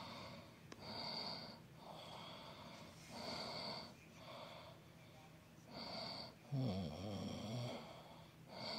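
Heavy, rhythmic breathing close to the microphone, about one breath a second, with a low, wavering vocal sound in the last second and a half.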